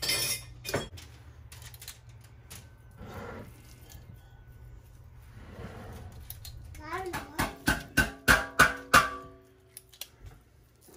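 A measuring spoon clinks against a glass mixing bowl. Then comes soft squishing as hands mix ground beef for meatballs. Near the end there is a louder run of about half a dozen evenly spaced beats with pitched notes between them.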